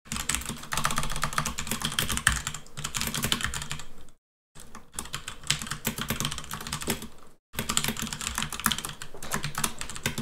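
Fast typing on a computer keyboard: a dense run of key clicks, broken by two short pauses about four seconds in and about seven and a half seconds in.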